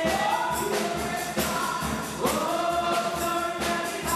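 Gospel choir of women singing into microphones, with sung notes gliding and held over a steady percussion beat.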